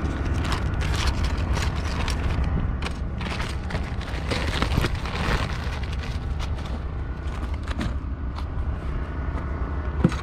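Plastic bags rustling and packed items knocking as food and supplies are rummaged through in a car's rear cargo area, busiest around the middle, over a steady low rumble.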